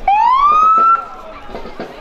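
Police SUV's siren giving one short whoop: a loud tone rising in pitch for about a second, then cut off abruptly.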